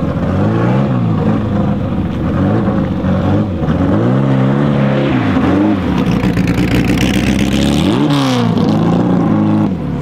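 Porsche 550 Spyder's 1500cc four-cam flat-four engine accelerating hard through the gears. The revs climb and fall several times, with a sharp climb just after eight seconds, then drop just before the end. A brief hiss comes in around the last rise.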